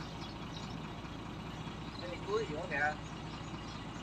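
Crane truck's engine idling with a steady low hum.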